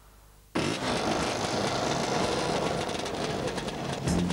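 Vintage two-stroke motor scooters riding past, engines running steadily; the sound cuts in abruptly about half a second in.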